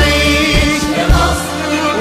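Background music: an Arabic patriotic song about Egypt, sung voices over a drum beat.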